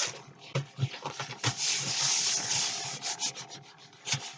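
Hands handling paper on a tabletop: a few rustles and light knocks, then a steady paper-on-paper rubbing for about two seconds in the middle as a sheet is smoothed flat by hand, and lighter scraping ticks toward the end.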